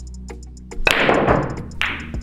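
Pool cue striking the cue ball very hard, center ball, followed by sharp knocks of the balls colliding and hitting the cushions: the shot is hit far harder than needed. A steady background music bed runs underneath.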